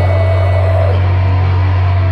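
Heavy band playing live through the venue's PA, heard loud from the crowd, with a steady low note held unbroken throughout.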